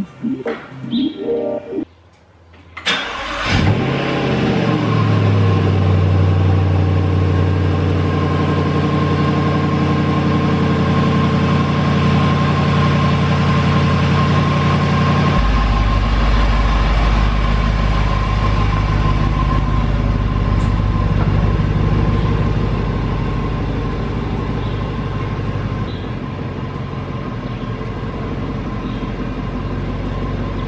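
Jaguar XFR's supercharged 5.0-litre V8 starting about three seconds in with a brief rise in revs, then idling steadily. Later the car is driven out, and its sound eases off in the last few seconds.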